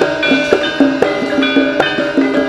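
Live Javanese gamelan accompaniment for a jaran kepang dance: ringing metallophone tones over hand-drum strokes about three times a second.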